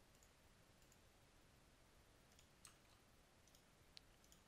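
Near silence: faint room tone with a few faint computer mouse clicks, the clearest just past the middle and at the very end.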